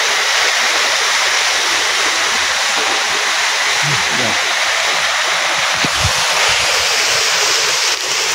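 Waterfall cascading over rocks close by: a loud, steady rush of falling water.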